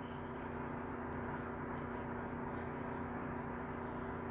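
Small electric motor running steadily, a low even hum with a few fixed tones and no change in speed, from a bench dental lathe.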